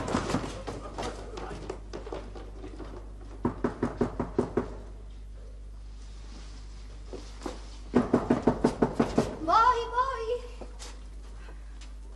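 Rapid knocking on a door: a short burst about three and a half seconds in, then a longer, louder bout about eight seconds in. A woman's brief exclamation follows.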